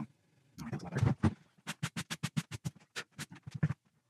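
Steel wool scrubbing back and forth across the frets of a guitar neck, in quick, even scratchy strokes about five or six a second, polishing the frets and clearing gunk off the fingerboard.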